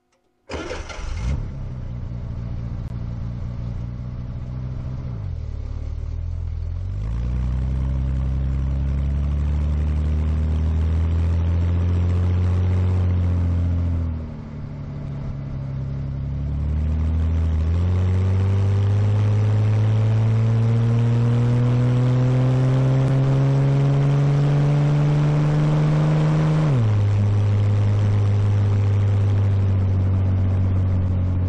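1965 Chevrolet Corvair's air-cooled flat-six engine and exhaust pulling uphill under load, recorded close to the tailpipe. It cuts in abruptly just after the start. The pitch climbs steadily as the revs rise, then drops sharply three times and climbs again.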